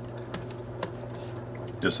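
A few separate keystrokes on a computer keyboard, each a short sharp click, as a line of code is typed.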